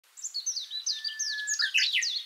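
Birdsong: a fast run of short, high, falling chirps, with one held whistle in the middle.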